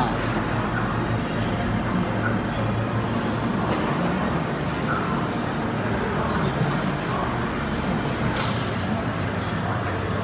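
Steady background din of machinery and faint voices, with a short hiss of compressed air venting from the pneumatic heat press about eight and a half seconds in.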